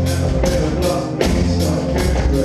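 Rock band playing live on stage: drum kit, bass and electric guitars, with drum hits landing in a steady beat about two to three times a second.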